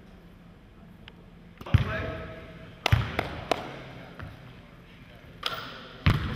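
A basketball bouncing on a hardwood gym floor: a few irregular bounces starting about two seconds in, each echoing briefly in the hall.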